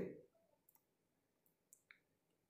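Near silence broken by a few faint, short metal clicks, two of them just before the end, from a wrench socket being worked onto the 17 mm lock nut on a tractor's rear axle housing.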